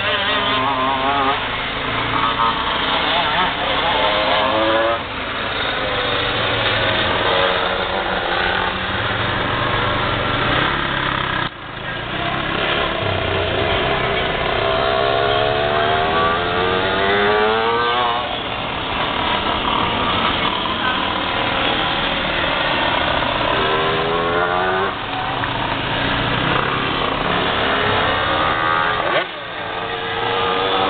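Several 125cc two-stroke shifter cage-kart engines racing on a dirt oval, their pitch rising and falling over and over as the karts accelerate down the straights and back off for the turns, with several engines heard at once.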